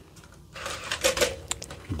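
Toothbrush-head packaging being handled: a cardboard box picked up off the plastic blister trays, with scraping, rustling and light clicks that start about half a second in.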